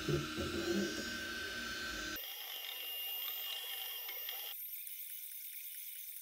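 A modified Tevo Little Monster delta 3D printer running as it draws its prime line and starts printing: a steady mechanical whir with thin, high, even whining tones. The lower part of the sound drops away about two seconds in, and it thins further and fades near the end.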